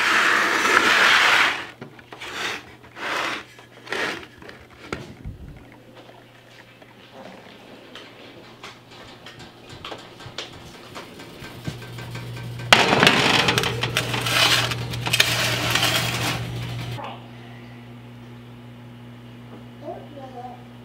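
Kitchen handling sounds of a metal sheet pan loaded with squash being carried to the oven and put in. There are a few sharp knocks and clatters in the first few seconds, and a longer stretch of scraping and rattling about two-thirds of the way through, over a steady low hum.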